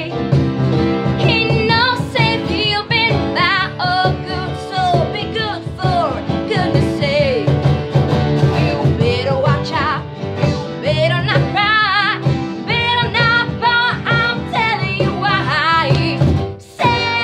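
A woman singing a pop Christmas song lead, holding wavering notes, over two strummed acoustic guitars and a keyboard.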